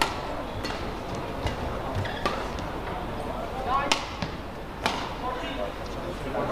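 Badminton racquets striking a feather shuttlecock in a fast rally: sharp cracks at uneven intervals of about a second, with short squeaks from court shoes just before the loudest hit, about four seconds in, over the murmur of an indoor hall.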